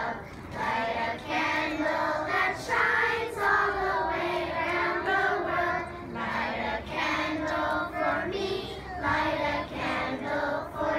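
A large group of young children singing together in unison, sung phrase by phrase with short breaks between lines.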